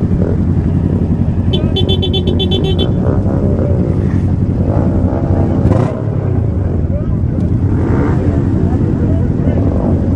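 Many motorcycle engines idle and rev in a crowd of bikes. The rider's own engine runs steadily close to the microphone, and others rise and fall in pitch around it. For a second or so, about a second and a half in, there is a rapid high beeping.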